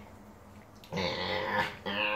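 A small dog growling in play while it is wrestled on its back: a loud, rough growl begins about a second in, and a second one starts near the end.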